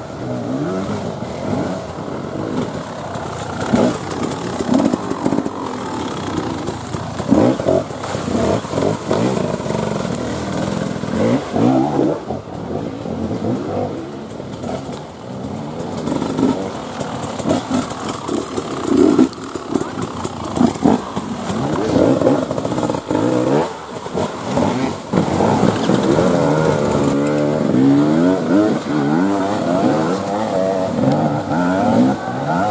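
Enduro dirt bike engines revving in uneven bursts, the pitch sweeping up and down with each blip of the throttle as the bikes pick their way over a rough, steep trail. Over the last few seconds a two-stroke engine revs in quick, wavering bursts.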